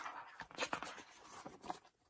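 Glossy pages of an album photobook being turned by hand: paper rustling, with several short crisp flaps and crinkles as the pages move.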